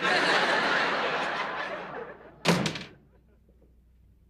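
Studio audience laughing, fading over about two seconds, then a single door slam about two and a half seconds in.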